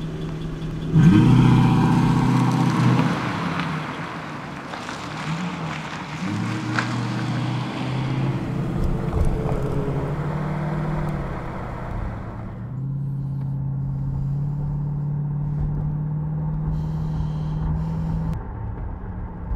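Car engine revving up about a second in and accelerating away, then running steadily at speed. About 13 s in the sound turns duller, as if heard muffled, while the engine drone goes on.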